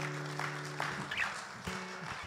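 Soft acoustic guitar background music: a held chord that fades about a second in, with a new chord starting near the end.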